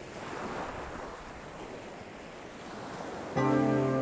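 Ocean surf washing in a steady hiss that swells about half a second in. Near the end a sustained musical chord comes in suddenly and is the loudest thing.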